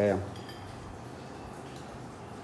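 Low steady room noise with a few faint, light clinks.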